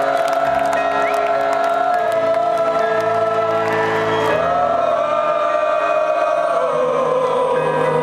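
A live rock concert ballad: a male lead singer sings long held notes over the band's accompaniment, amplified through the arena PA, with crowd voices cheering and singing along.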